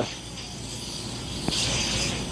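Axe aerosol body spray hissing from the can in a short burst that starts with a click about three-quarters of the way in, after a quieter stretch of faint hiss.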